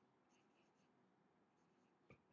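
Near silence, with faint short squeaks of a marker writing on a whiteboard.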